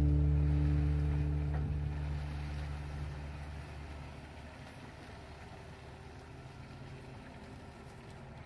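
Background guitar music fading out over the first few seconds, leaving the faint, steady running of a Kato HD512 excavator's engine as it digs.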